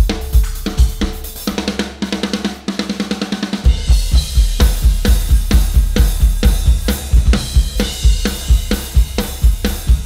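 Tama drum kit with Zildjian cymbals played with sticks. About a second and a half in there is a stretch of deeper drum hits, and from about four seconds a fast, steady beat of bass drum, snare and cymbals.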